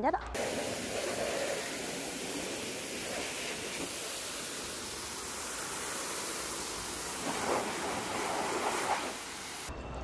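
High-pressure water jet from the spray gun of a Palada 20M36-7.5T4 pressure washer (7.5 kW, 230 bar) blasting onto the ground: a steady, even hiss that starts suddenly and cuts off near the end.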